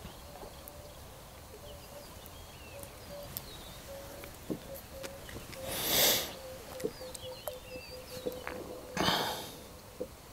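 Quiet open-air background with faint bird chirps now and then and a faint steady hum. Two soft, breathy whooshes swell and fade, the louder about six seconds in and a weaker one near the end.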